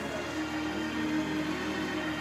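Soft background music: low sustained keyboard chords held under a pause in the prayer.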